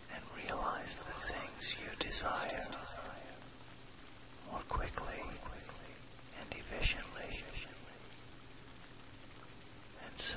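Soft whispered voice-over in three short phrases over a steady bed of recorded rain, with a faint low steady tone of an isochronic beat beneath.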